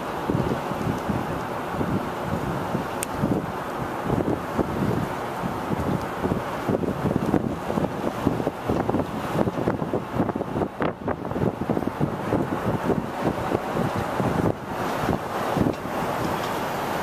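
Wind buffeting the camera's microphone, a loud, uneven rumble that rises and falls in gusts.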